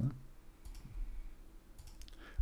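Faint computer mouse clicks, once a little under a second in and again near the end, as a symbol is added on screen.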